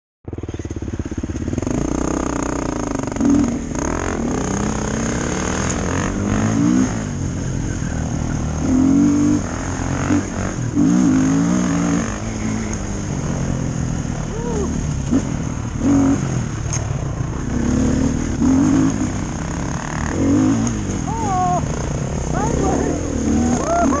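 Dirt bike engine under power on a dirt trail, its pitch climbing and dropping back again and again as the rider revs and shifts.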